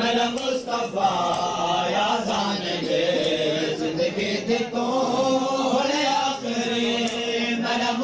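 Male voices chanting a noha, a Shia mourning lament, in long held notes, with sharp slaps of chest-beating (matam) breaking in through it.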